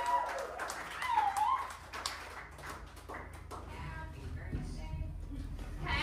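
Indistinct voices in a lull between songs at a small live gig, one of them a short sliding vocal sound about a second in, over a low steady hum that grows louder toward the end.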